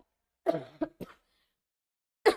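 A woman clearing her throat once, briefly, about half a second in.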